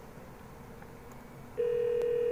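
Ringback tone from an Avaya desk phone's speakerphone: after a faint hiss, a loud steady single-pitched tone starts near the end, showing the dialled extension is ringing and not yet answered.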